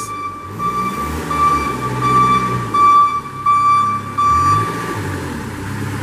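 Moffett M5000 forklift's backup alarm beeping about twice a second as it drives in reverse, over its Kubota V2203 four-cylinder diesel engine, whose speed rises and falls. The beeping stops about five seconds in.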